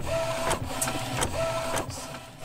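Epson inkjet printer in the middle of a print job, its print-head carriage sweeping back and forth across the page: a whirring tone on each pass, about three passes in two seconds, with a click at each turnaround.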